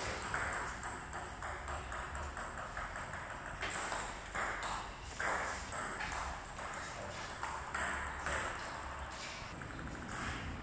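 Table tennis rally: the ball clicking repeatedly off the paddles and the table in quick, uneven succession.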